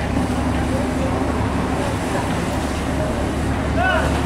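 Harbour waterfront field recording: a steady low motor rumble and traffic-like noise from boats and the shore, with faint distant voices.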